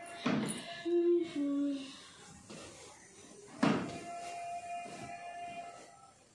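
A plastic carrier bag rustling and crinkling as clothes are pushed into it, with two louder rustles, one just after the start and one about two-thirds through. Two short low tones, the second lower, come about a second in, over a steady held tone.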